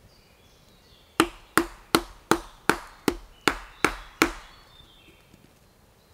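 Wooden mallet striking a chisel held against a log: nine sharp wooden knocks at an even pace of about two and a half a second, starting about a second in and stopping a little after four seconds.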